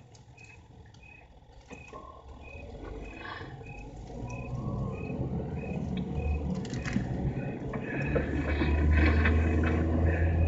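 Crickets chirping steadily, about two chirps a second, as a radio-drama night-time sound effect, with a low rumble that grows louder through the second half.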